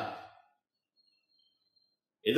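A man's voice trailing off at the end of a phrase in the first half-second, then near silence with a faint, thin high tone.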